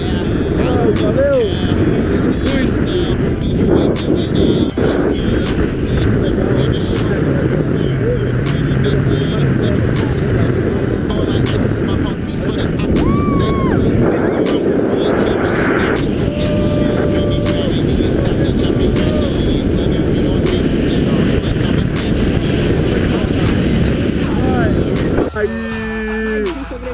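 Steady wind noise on the camera microphone during a tandem parachute descent, with a pop music soundtrack playing over it.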